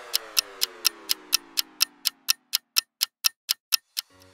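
Clock-ticking countdown timer sound effect, about four even ticks a second, while a lower tone left over from the sound just before slides downward and fades out.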